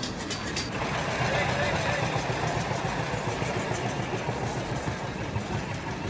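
Steady engine and vehicle noise with indistinct voices mixed in, and a few sharp clicks in the first second.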